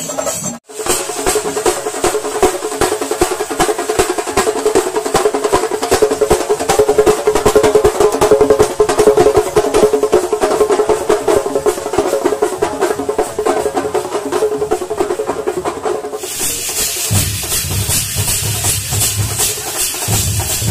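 Fast, dense drumming from a procession percussion troupe, with rapid continuous rolls. After a cut about 16 s in, the mix changes and deeper booming beats come through.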